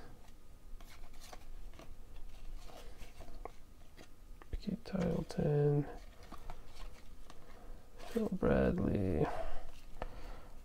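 A stack of 1991 Upper Deck baseball cards being flipped through by hand: soft card-on-card slides and light ticks as each card is moved from back to front.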